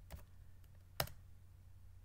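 Computer keyboard key presses: a faint tap near the start, then one sharp key press about a second in, the Enter key running a typed command. A low steady hum lies underneath.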